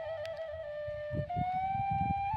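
Background music: a slow solo flute melody, one long held note and then a new note about halfway through.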